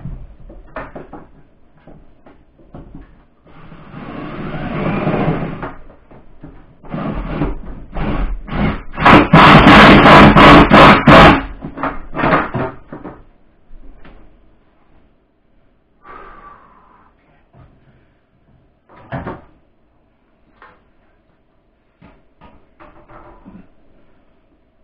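Cordless drill driving mounting screws in a run of short trigger bursts. One longer run comes about four seconds in, and the loudest rapid bursts come in the middle. Scattered knocks and clicks of handling follow.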